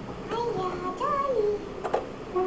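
A child's high voice in a few drawn-out sung notes with no clear words, the last note rising then falling. A light click near the end.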